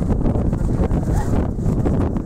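Class 55 Deltic diesel locomotive's twin Napier Deltic two-stroke engines working as it pulls away with its train, heard as a loud continuous rumble through wind buffeting the microphone.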